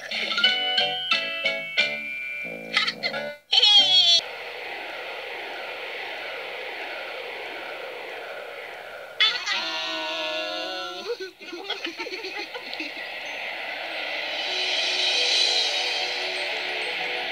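Children's TV soundtrack: a bouncy tune of short plucked notes, cut off by a quick sliding sound effect about four seconds in, then a steady shimmering whoosh as the magic pinwheel spins. A warbling sound breaks in about nine seconds in, and twinkling chimes swell near the end.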